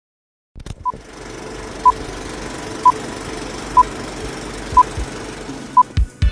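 Electronic intro sound: after half a second of silence, a steady low hum with six short high beeps about a second apart, most paired with a low thump.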